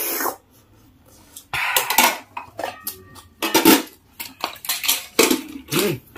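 Metal ladle and spoon clinking and scraping against bowls and plates in several short bursts of clatter, some with a brief ring.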